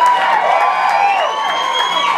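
Audience cheering and whooping, with one long whistle slowly rising in pitch, as the flamenco-style acoustic guitar music breaks off.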